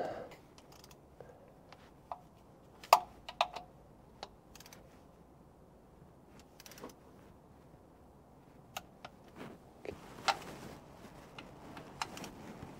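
Scattered sharp metal clicks and clinks of a long-handled wrench as bolts on a diesel engine's timing gear cover are tightened to torque. The loudest click comes about three seconds in, followed by a quick few more, and another cluster comes late on.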